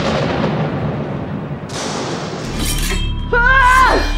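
Film soundtrack of a fight scene: dramatic music under sharp crashing hits, about two and three seconds in. Near the end comes a short wavering pitched cry that drops away in pitch.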